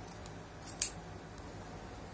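A single sharp click about a second in, with a few faint ticks around it, as fabric is handled and set under a sewing machine's presser foot.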